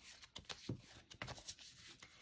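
A deck of oracle cards being shuffled by hand: faint rustling with scattered light flicks of card on card.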